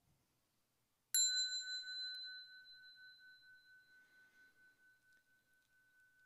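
A small bell, used to close a Buddhist meditation, struck once about a second in. It rings a single high, clear tone that fades slowly over several seconds.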